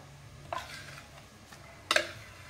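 Plastic food-processor bowl knocking against a plastic mixing basin while ground meat and bulgur paste is emptied out: a light knock about half a second in and a sharper one near the end.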